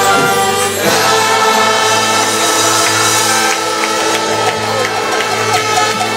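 Church congregation singing a worship song together with instrumental backing, the voices holding long, steady notes.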